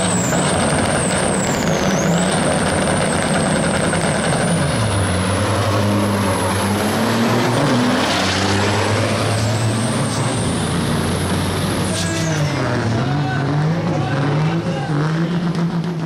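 Two diesel semi trucks drag racing at full throttle. A high turbo whistle climbs at the launch and holds. The engine note drops back and climbs again several times as the trucks shift gears, and about twelve seconds in the whistle falls away as they come off the throttle.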